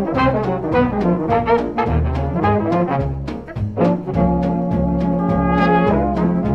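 1940s small-band swing jazz recording: brass horns play melody lines over bass and drums keeping a steady beat of about three strokes a second.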